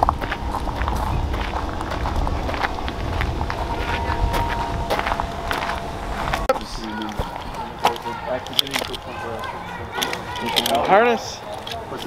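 Footsteps crunching on a gravel path, with a low rumble from the moving camera for about the first half. Voices speak briefly in the second half.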